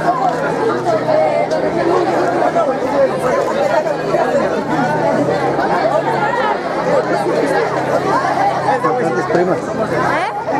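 Crowd of teenagers chattering, many voices talking at once with no single voice standing out, over a steady low hum.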